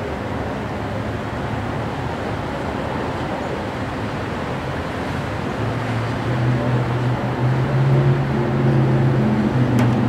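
Traffic noise, then about halfway a motor vehicle's engine hum comes in and runs steadily, growing a little louder; a single click sounds near the end.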